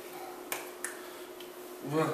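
Two sharp clicks about half a second apart, from a signer's hands striking together while signing, then a short voiced grunt near the end. A faint steady hum lies underneath.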